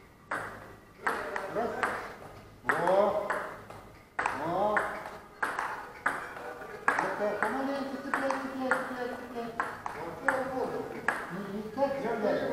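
Table-tennis rally: the plastic ball clicking sharply off bats and table in a quick, slightly irregular series, about one to two hits a second.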